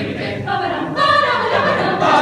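Mixed chamber choir of female and male voices singing a cappella, holding sustained chords; the sound grows fuller and louder about a second in.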